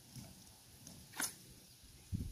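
Plastic pool vacuum hose being twisted into a coil, with one brief scrape about a second in.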